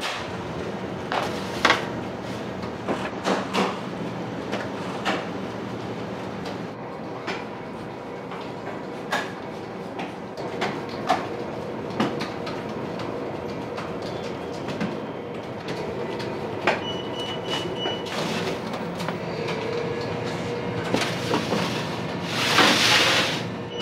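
Steady hum of bakery kitchen machinery with scattered clanks and knocks of metal baking trays being handled, and a brief high tone about 17 seconds in.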